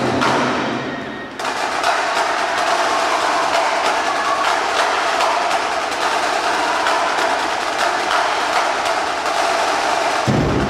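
Drum corps drumline playing fast, dense snare patterns with sharp stick strokes. The deep drums drop out about a second and a half in, leaving the higher drumming.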